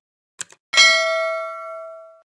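Subscribe-animation sound effect: two quick mouse clicks, then a bright bell ding that rings out and fades over about a second and a half.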